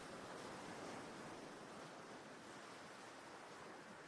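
Faint, steady wash of water and wind noise, with a slight swell about a second in.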